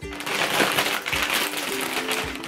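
Clear plastic vacuum storage bag crinkling as it is handled and pressed, stuffed full of pillows and throws, over light background music.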